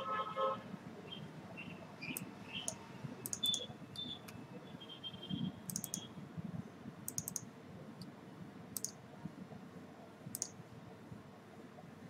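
Computer mouse clicking: short, sharp clicks, some single and some in quick runs of two or three, every second or two, over faint room noise.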